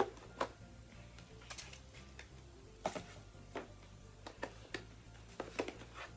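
A phone case being pressed onto the back of an OPPO A72 smartphone: a handful of separate sharp clicks and taps, spaced irregularly about a second apart.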